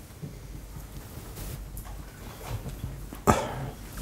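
Quiet room tone of a lecture hall during a pause, with faint low sounds and one short, sharp, loud burst a little after three seconds in.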